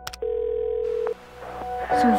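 Telephone ringback tone heard by the caller while a call is placed: a single steady beep lasting about a second.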